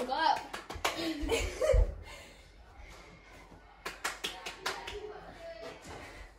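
Indoor mini-hoop basketball play: a quick run of sharp slaps and knocks shortly after the start and another about four seconds in, with heavy thuds in between, under boys' voices.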